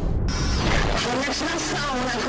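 Title-card sound effect, a dense noisy hit with a short falling tone. From about a second in, a voice is heard over music.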